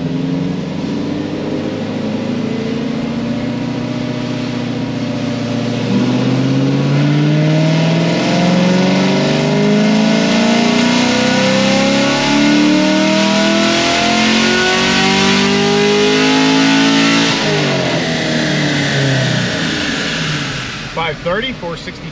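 2017 Chevrolet Camaro V8 with a heads-and-cam package making a full-throttle pull on a chassis dyno. After a few steady seconds it gets louder about six seconds in, and the revs climb steadily for roughly ten seconds under load. It then lifts off and the revs fall away.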